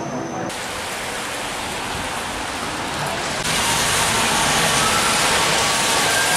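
Steady hiss of rain and car tyres on a wet city street, growing louder about three and a half seconds in.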